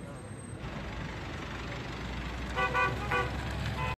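Car horn tooting in short blasts: two quick toots about two and a half seconds in and another just after three seconds, over steady street traffic noise.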